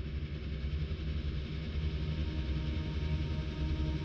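A steady low droning hum with a few faint held tones above it, unchanging throughout.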